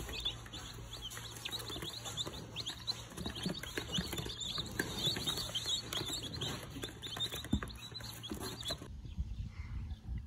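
A brood of about two dozen young domestic chicks peeping all together, a dense stream of overlapping high peeps. The peeping drops away about nine seconds in.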